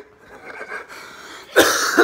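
Soft laughter, then about one and a half seconds in a single loud, short cough from a person mid-laugh.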